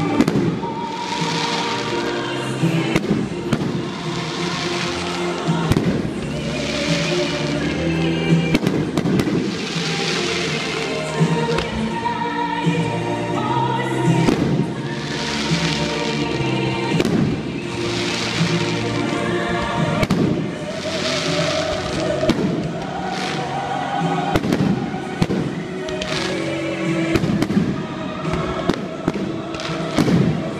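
Aerial firework shells bursting in a display, many sharp bangs at irregular intervals, with music playing alongside.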